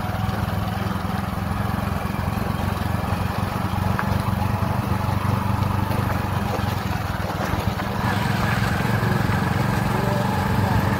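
Motorcycle engine running steadily while it is being ridden, with road and wind noise.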